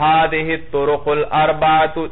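A man's voice speaking in a drawn-out, chant-like monotone: a few long phrases on a level pitch with short breaks between them.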